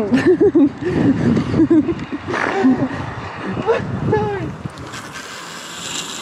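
Laughter and short exclamations from a person, then a steady hiss near the end.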